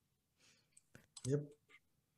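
Mostly quiet room tone with a few faint clicks about a second in, around a short spoken "yep".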